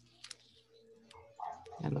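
Quiet video-call background with a faint steady hum, then a voice saying a drawn-out goodbye that starts near the end.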